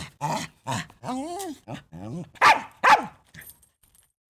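A small dog barking in a quick run of short barks, with one longer, wavering call about a second in and the two loudest barks close together past the middle.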